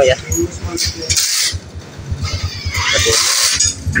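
Yamaha Mio J scooter's single-cylinder engine, running on a carburettor in place of its fuel injection, idling with an even rapid pulse of about ten beats a second. Two short hisses sound over it.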